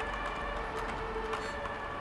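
Steady background hum with a faint held tone, and a few soft, scattered clicks of computer keyboard keys.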